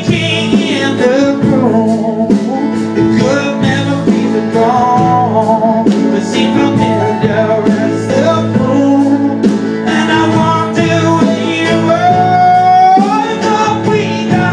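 Live band performance of a slow song: a male singer over strummed acoustic guitar, backed by an electric keyboard and a second guitar.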